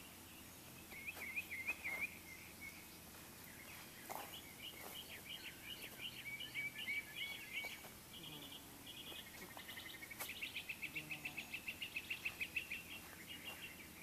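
Songbirds singing in the trees, a mix of chirps and warbled phrases, with a fast, even trill of about nine notes a second in the second half.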